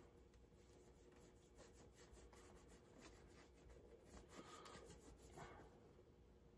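Near silence: room tone with a faint steady hum and faint scattered rustles.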